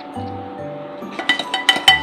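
Background music. From about a second in, a steel ladle clinks quickly against a steel pan, several strikes a second, as the milk in it is stirred.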